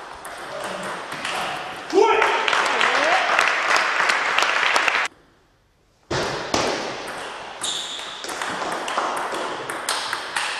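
Table tennis rally: the ball cracks sharply off the bats and bounces on the table at an irregular pace. Loud voices rise over it about two seconds in. The sound cuts off abruptly about five seconds in, and a new run of ball clicks starts a second later.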